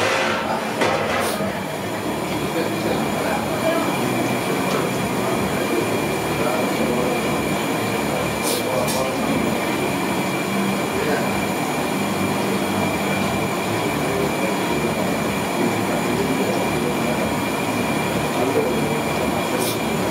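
Steady bubbling and sizzling from a large kadai of hot oil deep-frying gulab jamun over its burner, with a couple of faint clicks.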